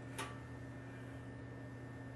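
Quiet, steady electrical hum with a single brief click just after the start.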